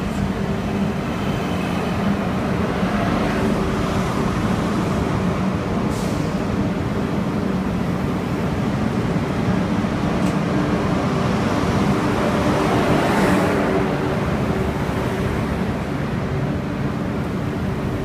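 Two coupled renovated TGV PSE high-speed trainsets rolling slowly past at a station platform as they pull in: a steady rolling rumble with a low motor hum, swelling slightly past the two-thirds mark, with a couple of short sharp clicks.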